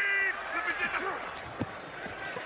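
Faint football broadcast commentary, a man's voice at low level, over a steady haze of stadium crowd noise, with a single short knock about one and a half seconds in.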